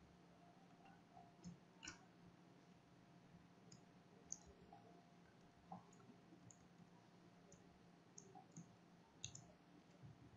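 Faint computer keyboard keystrokes, about a dozen irregular clicks spread out, over a low steady hum.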